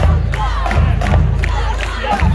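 Marching band playing with a steady drum beat, under crowd cheering and shouting.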